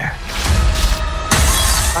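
Trailer sound design: a deep rumble under held musical tones, then a sudden loud crash a little past a second in.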